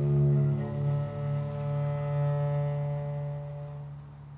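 Viola da gamba bowing a long, low held note with higher notes sounding above it, the music fading away near the end.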